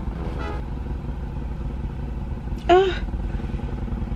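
A car engine idling steadily, heard from inside the cabin, with a short vocal sound from the driver a little under three seconds in.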